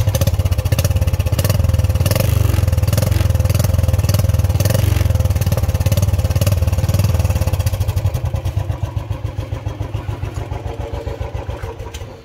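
Royal Enfield 350 single-cylinder engine revving through a stainless steel free-flow silencer whose baffle has just been adjusted with an Allen key to change the exhaust note. The engine runs hard for about eight seconds, then eases off, its exhaust beats thinning out and fading toward the end.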